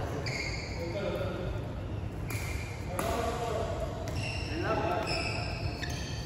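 Court shoes squeaking on a sports-hall floor during badminton play: several short, high squeaks, with a sharp knock or two. Voices and the reverberation of a large hall are heard behind them.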